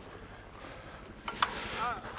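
Trek Fuel EX 9.8 mountain bike on 27.5+ tyres rolling along a dry dirt singletrack through long grass, a quiet steady rolling and brushing noise. Two sharp knocks come close together just past the middle. A brief vocal sound follows near the end.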